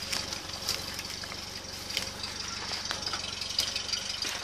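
An off-road vehicle's engine idling steadily, with scattered crackles and snaps of dry branches and grass being handled close by.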